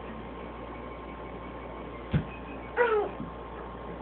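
A single knock on a wooden table about two seconds in, then a short, high cry under half a second long whose pitch wavers and falls.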